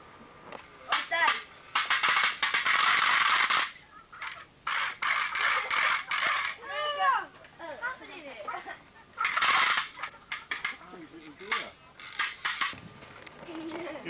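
Indistinct voices of people talking off-microphone. Twice they are broken by loud hissing noise bursts, one lasting nearly two seconds a couple of seconds in and a shorter one near ten seconds.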